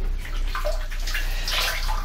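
Water sloshing and splashing in the water-filled tub of a top-loading washing machine, a steady wash of noise.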